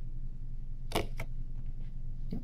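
Two quick clicks of hard plastic about a second in, a clear plastic cup being lifted off a tarantula inside a plastic tub, over a steady low hum.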